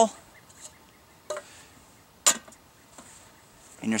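A faint knock about a second in, then one sharp metallic click as a stainless steel Stanley cook pot is set down on the steel hanger-strap cross pieces on top of a tin-can stove.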